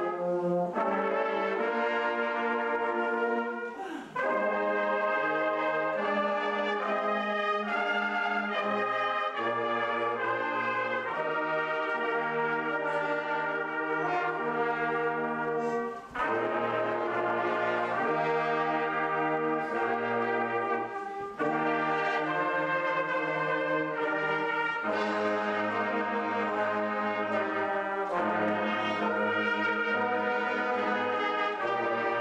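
An Andalusian agrupación musical, a brass band of trumpets and trombones, playing slow sustained chords over a moving bass line, with brief breaks between phrases about four, sixteen and twenty-one seconds in.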